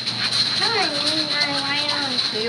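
A high-pitched voice holding one long drawn-out vowel for about a second and a half, starting about half a second in, over a steady high whine.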